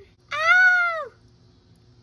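A single high-pitched cry, about a second long, rising slightly and then falling in pitch.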